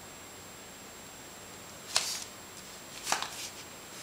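Two short bursts of rustling and clicking, about two and three seconds in, from the camera being handled and moved, over a steady hiss.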